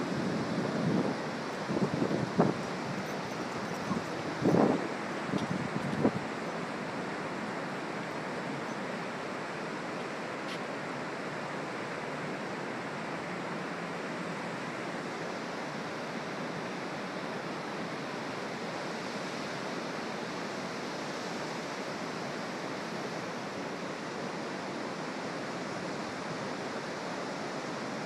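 Steady ocean surf breaking on a wide sandy beach, mixed with wind blowing over the microphone. There are a few louder bumps in the first six seconds.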